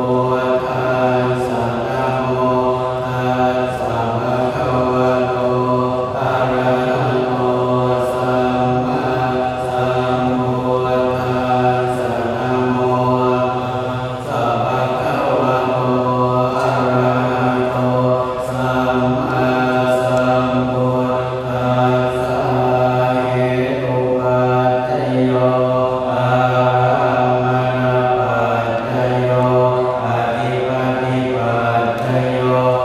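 Thai Buddhist monks chanting Pali verses together in a steady, low recitation, picked up through a microphone.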